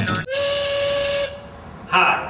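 A loud hiss with a steady whistle tone, lasting about a second, right after music stops abruptly.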